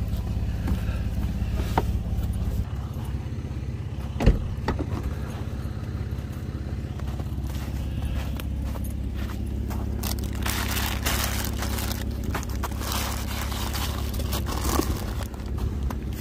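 A vehicle engine idling with a steady low hum that shifts pitch about three seconds in, and a single sharp knock about four seconds in. From about ten seconds on, footsteps crunch through snow.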